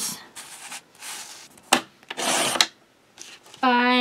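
Paper sliding and rubbing on a paper trimmer, with a sharp click and then a short rasping stroke of the trimmer blade cutting through the sheet, about two seconds in.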